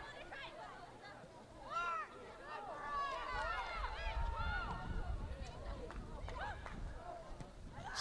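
Several high voices of soccer players shouting short calls across the pitch during play, a few overlapping, clustered about two seconds in and again in the middle.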